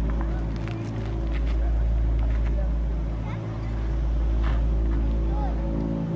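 Background music with a low, sustained drone, under the sound of people's voices.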